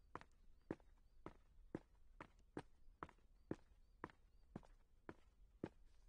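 Footsteps of a person walking steadily on a polished stone floor: faint, even heel strikes about two per second.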